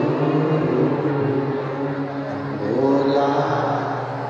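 A man chanting a Shiva mantra in long, drawn-out sung notes, amplified through a microphone, over a steady low drone.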